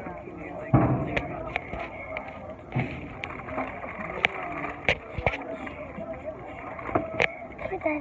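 Phone being handled close to its microphone: a series of knocks and rubbing clicks, the loudest a thump about a second in, over muffled talk.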